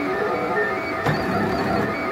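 Ultimaker 3D printer's stepper motors whining in short tones that change pitch every fraction of a second as the print head moves around the layer of a vase.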